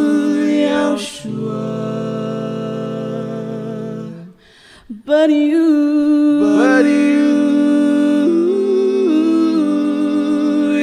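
Live singing in long held, slightly wavering notes over a sustained keyboard chord, with a short break a little over four seconds in before the next held note.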